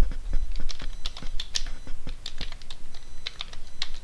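Typing on a computer keyboard: a quick, uneven run of keystroke clicks over a low steady hum.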